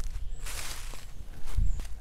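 Footsteps through dry fallen leaves on a forest floor, the leaf litter rustling under each step, the heaviest step about three-quarters of the way in.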